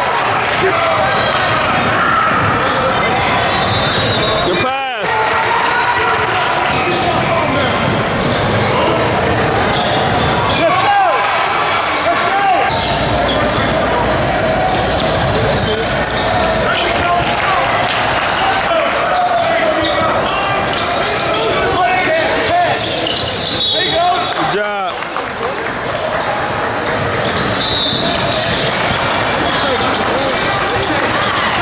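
Game sounds of a youth basketball game in a gym: a basketball bouncing on the hardwood court, with background voices of players and spectators echoing in the hall. The sound is steady apart from two brief dropouts, about five seconds in and near twenty-five seconds.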